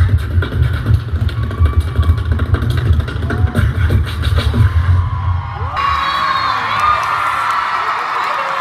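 A beatboxer performing into a microphone through a concert sound system, with heavy rhythmic bass strokes. About six seconds in this gives way abruptly to a large crowd cheering and screaming.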